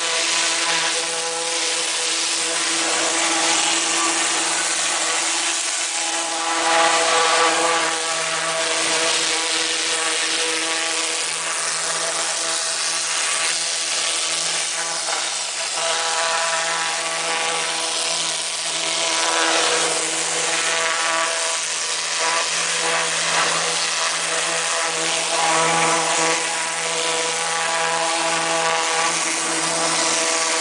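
High-pressure water jet from a pressure-washer lance blasting marine growth off a fiberglass boat hull: a loud, steady hiss of spray over an unbroken machine drone.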